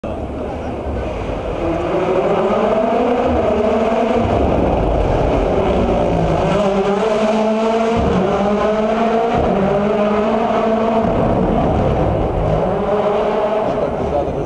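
World Rally Car engine accelerating hard, its pitch climbing again and again as it shifts up through the gears, with a brief cut about eight seconds in.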